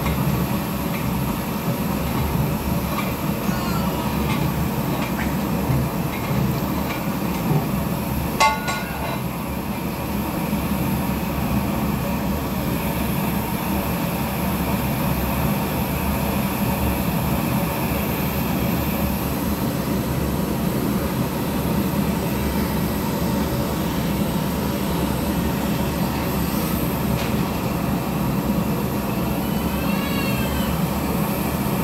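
Gas burner under a large cooking pot, running with a steady roar. About eight seconds in, a single metallic clank rings briefly.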